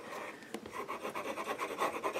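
Plastic tip of a liquid glue bottle scraping across cardstock as glue is squiggled on: a rapid, irregular scratching.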